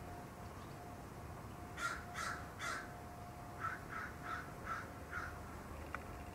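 A bird calling outdoors. It gives a run of three louder calls about two seconds in, then five softer calls at an even spacing of about two a second.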